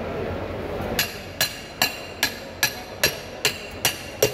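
A steel rebar rod strikes the back of a knife blade again and again, driving the blade through a large trevally to split it lengthwise. The sharp metallic clinks ring briefly, about two or three a second, starting about a second in.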